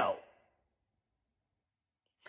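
The last syllable of a man's spoken word trailing off in the first moment, then dead silence.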